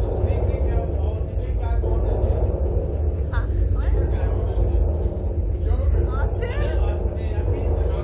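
A steady low rumble runs throughout, with voices talking faintly now and then.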